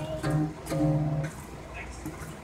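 A small child's guitar sounding in two short phrases in the first second or so, mixed with the young child's voice, then fading to a quieter stretch.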